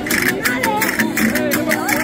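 Verdiales folk band playing: strummed guitars over a quick, steady beat of about four jingling percussion strokes a second, with voices over the music.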